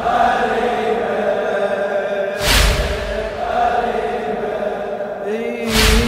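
Men chanting a Shia mourning lament (latmiyya) in long held notes. A crowd's unison chest-beating (latm) lands twice, as heavy slaps about halfway through and just before the end.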